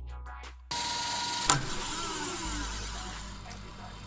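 A car passing on a street: a steady rush of traffic noise comes in about a second in, with a sharp click shortly after, then slowly fades away.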